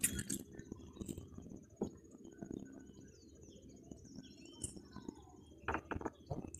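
Faint bird chirps and calls over a steady high insect-like tone, broken by scattered clicks and knocks from a caught piau and fishing tackle being handled in a boat, with louder clicks at the start and near the end.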